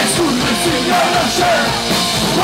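Live punk rock band playing a song at full volume, with vocals over the instruments.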